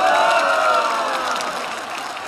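Studio audience laughing together, with some scattered clapping, dying down near the end.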